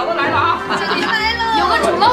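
Several people talking and calling out at once over background music.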